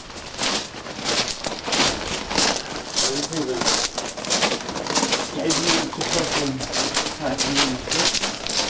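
Footsteps crunching on the gravel ballast of a railway track at a steady walking pace, about two steps a second. Low, wavering calls sound a few times from about three seconds in.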